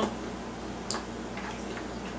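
A light click of plastic toy parts about a second in as the action figure is handled, likely its shield clipping back onto the arm, over a steady low hum of room noise.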